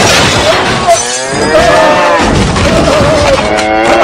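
Cartoon crash of breaking furniture and shattering glass, followed from about a second in by a man's long, wavering scream as a bull tramples him.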